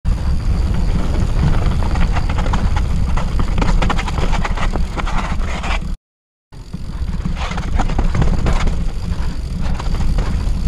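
Yeti SB6 mountain bike descending a rough dirt trail, heard from an action camera riding along: constant wind rumble on the microphone under a dense clatter of rattles and clicks from the bike over the bumps. The sound cuts out completely for about half a second some six seconds in.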